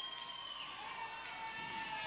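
Faint crowd cheering and shouting from an audience, with a few high held voices.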